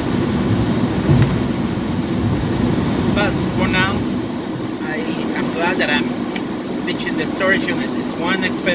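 Steady low road and engine rumble inside a moving car's cabin. From about three seconds in, a voice is heard over it.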